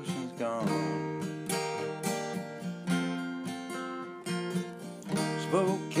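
Song accompaniment of strummed acoustic guitar between sung lines, with a singing voice coming back in near the end.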